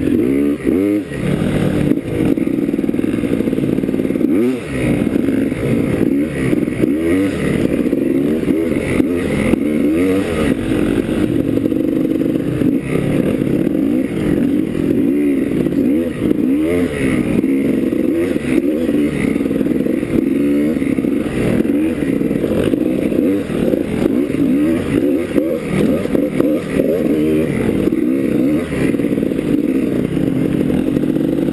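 Enduro dirt bike engine heard from the bike being ridden, revving up and down over and over as it climbs and picks its way along a rough dirt trail.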